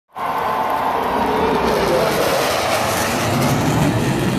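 Loud, steady jet noise from a four-plane military formation flyover, with a cheering stadium crowd mixed in.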